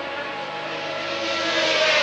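Formula One racing car engines running at high revs on track. The pitch falls slightly and the sound grows louder over the last half-second.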